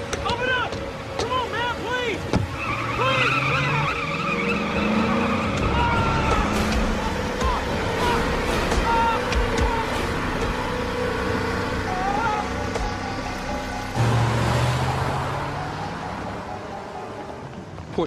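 Film soundtrack: a man shouting to be let in over a car's engine and squealing tires as the car pulls away, with dramatic music underneath. A sudden loud low swell comes about fourteen seconds in and then fades.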